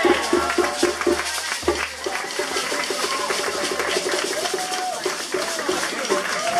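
Live djembe hand drumming: a fast, even run of strikes, getting denser in the middle, with a shaker and a few voices calling out near the end.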